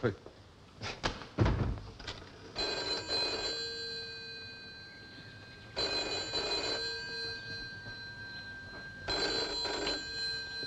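A few sharp knocks in the first two seconds, then a telephone bell ringing three times, each ring about a second long and about three seconds apart.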